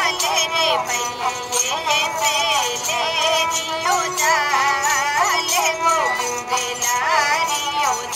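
Ravanahatha, a Rajasthani bowed folk fiddle, playing a wavering, voice-like melody with heavy vibrato over a steady lower drone note.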